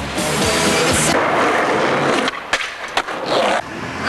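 Skateboard wheels rolling on pavement, with a few sharp clacks of the board, over music.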